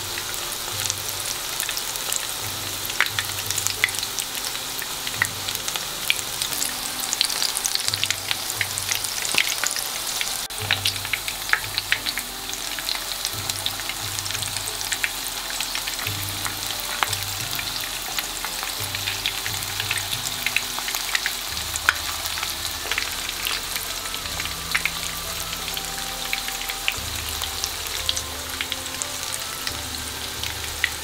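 Corn-and-shiso tempura fritters deep-frying in a pan of hot oil: a steady sizzle with constant fine crackling and popping.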